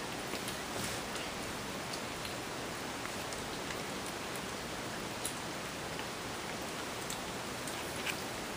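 A steady, even hiss, with a few faint clicks and smacks from a group of kittens eating together.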